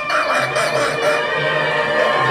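Two people laughing hard over background music.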